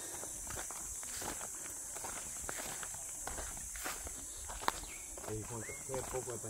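Footsteps of people in sandals walking on a dry dirt and grass trail: a scatter of light scuffs and crunches, with one sharper click about four and a half seconds in. A steady high hiss runs underneath, and a distant voice comes in near the end.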